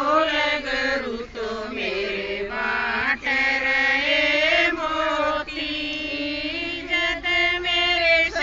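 A group of women singing a Haryanvi devotional folk song together in a chant-like unison, with long held, sliding notes and no instruments.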